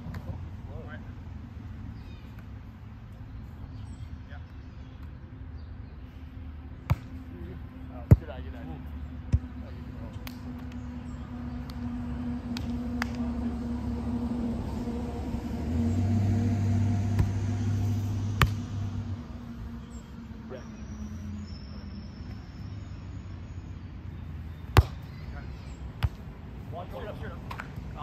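A volleyball being struck by hands and forearms in a rally: a handful of sharp smacks, three about a second apart, then more further on. Under them a low engine hum from passing traffic swells in the middle and fades.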